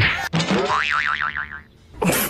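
Cartoon 'boing' comedy sound effect: a sharp hit, then a springy tone that wobbles up and down several times and dies away after about a second and a half.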